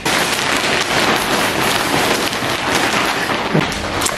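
A steady crackling hiss of noise, fairly loud, that starts abruptly and holds evenly throughout.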